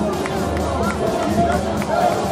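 Players and onlookers shouting and calling out during a football match, several voices overlapping over a steady background of chatter.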